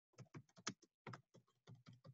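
Faint typing on a computer keyboard: a quick, irregular run of about ten key clicks.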